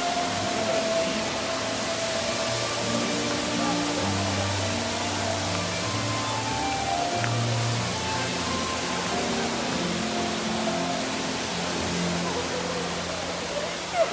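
Soft background music of slow, held notes over a steady hiss of fountain water and distant crowd voices.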